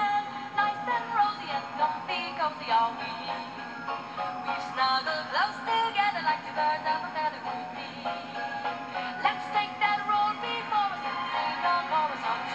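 Christmas music from an FM radio station broadcast: a band playing under a bending lead melody line, with short percussive strokes.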